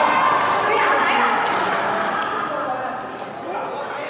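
Several people talking at once in a large sports hall, with a few short sharp taps among the voices; the chatter fades toward the end.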